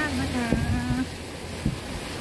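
Steady low drone of a boat's engine with a haze of wind and water noise as the boat cruises across open sea.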